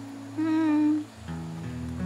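A person hums one short note with a slight waver, over soft background music. About a second in, guitar-led background music with a steady bass comes in.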